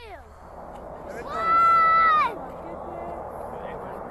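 A person in the crowd calling out a long, drawn-out "two" in the launch countdown, one loud held note lasting about a second, over a steady murmur of crowd and outdoor noise.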